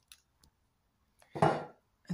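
Kitchen items being handled: two faint clicks, then one short, louder clatter about a second and a half in.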